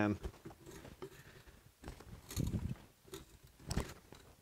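Antique hand-cranked breast drill boring into wood with a one-inch spade bit: faint, irregular scraping of the bit cutting and the gears turning. There are two louder scrapes, one about two and a half seconds in and one near the end.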